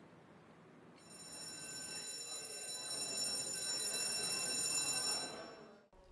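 A steady high-pitched electronic buzz with a hiss beneath it. It swells in about a second in, grows louder, and fades out just before the end.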